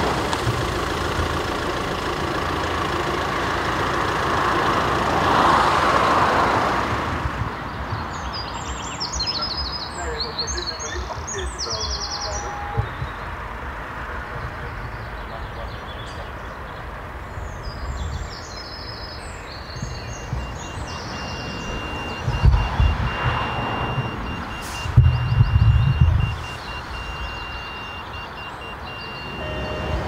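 A steady vehicle-engine rumble for about the first seven seconds, then birds chirping in woodland. In the second half a thin, steady high tone with short breaks runs for several seconds, and there are a few loud low thuds.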